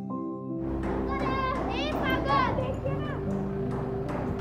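Soft instrumental background music. About half a second in, outdoor background noise comes in with it, and children's high voices call out excitedly over the music.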